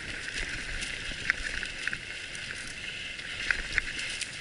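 Bicycles rolling along a dirt trail: a steady rushing hiss of riding over dirt and dry leaves, broken by a few sharp clicks and rattles from bumps in the trail.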